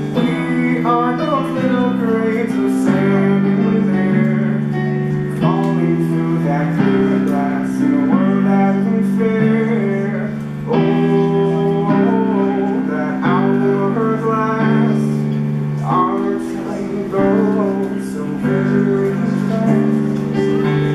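Electric keyboard playing held chords that change about every second and a half, with a solo voice singing over them.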